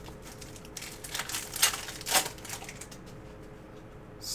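Chromium trading cards and their pack being handled on a table: a run of short crinkling rustles and card-on-card slides from about one to two and a half seconds in, over a faint steady room hum.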